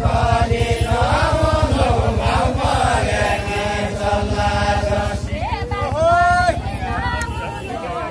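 Group of men singing a Deuda folk song in a chant-like style, with one voice holding a loud note that rises about six seconds in. A low rumble sits under the singing and fades near the end.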